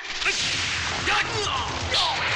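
Dense, continuous whooshing and whip-like swishing of film fight sound effects, a storm of flying paper talismans, with a few short shouted cries over it.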